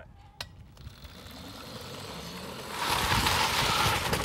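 Electric go-kart, driven by a 24-volt pallet-jack motor, pulling away, with a click about half a second in and then a building noise that turns into a loud, steady hiss of knobby ATV tyres sliding across asphalt in a power slide for the last second or so.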